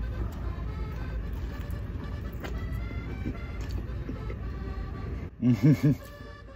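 Close-up chewing of a deep-fried Twinkie's crisp batter shell, over faint background music. A short muffled laugh about five and a half seconds in.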